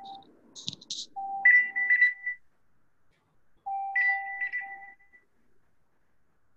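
An electronic ringtone-style jingle of clear beeping tones at two pitches, coming over the online class audio. It plays a short phrase twice, about two and a half seconds apart.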